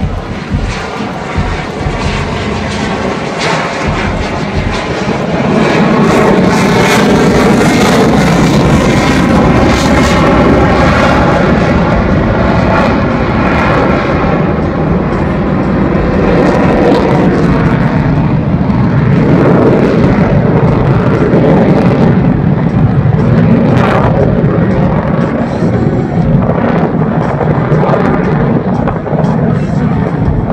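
F-16 Fighting Falcon's General Electric F110 turbofan at high thrust as the jet accelerates in a near-vertical climb. Loud jet engine noise that swells about five seconds in and stays loud, with a slowly sweeping, wavering tone as the jet climbs away overhead.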